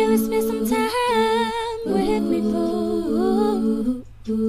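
R&B song playing: layered vocal harmonies holding long notes, with a lead voice running a wavering, vibrato-laden 'oh' about a second in.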